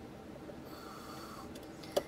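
Quiet handling sounds: a soft breath through the nose, then a few small clicks as a multimeter probe is pushed and wiggled into an outlet slot, the last one sharper.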